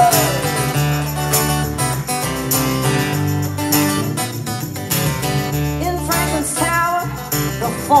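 Live band playing an instrumental passage: strummed acoustic guitar over electric bass, with a tambourine shaken in time. The vocal comes back in at the very end.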